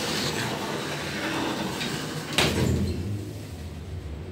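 Sliding doors of a 1992 Semag traction elevator closing, shutting with a sharp thud about two and a half seconds in. After that the shop's background noise drops and a low hum remains.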